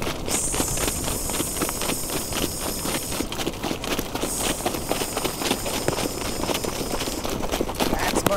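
Rapid hoofbeats of trotting harness horses on a snow-covered dirt track, heard from the sulky with wind rumbling on the microphone. A high hiss joins in twice, for about three seconds each time.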